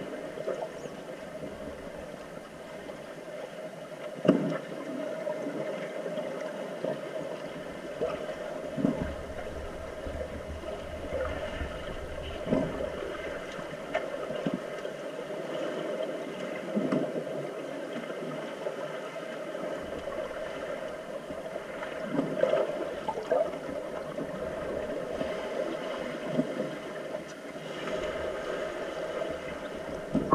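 Underwater sound of a swimming pool heard by a submerged camera: a steady muffled rush with a constant hum, broken by a few short knocks and clicks from the players' struggle.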